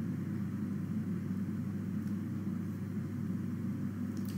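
A steady low mechanical hum.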